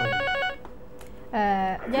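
Telephone ringing with a warbling electronic ring, an incoming call on the studio phone-in line. The ring stops about half a second in, and a voice speaks near the end.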